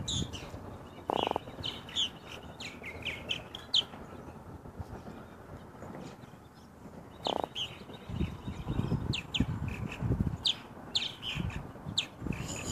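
A hooked Atlantic croaker croaking out of the water. There is a short croak about a second in and another at about seven seconds, then a run of low, grunting pulses in the second half. Small birds chirp faintly in the background.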